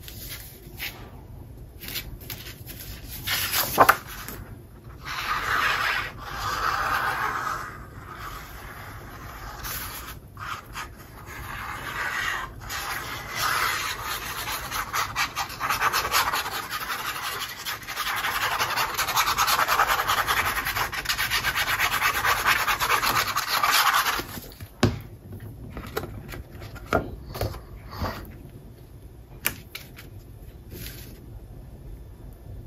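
Sheets of patterned paper and cardstock being handled, slid and rubbed by hand, with a glue bottle's tip scraping across the paper. It comes in scratchy stretches, the longest in the second half, broken by small taps and one sharp knock about four seconds in.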